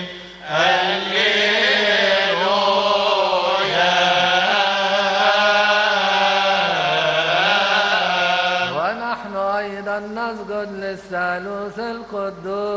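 Coptic deacons' choir chanting a liturgical hymn in unison. About nine seconds in the group chant ends and a single man's voice carries on in a broken, recited chant.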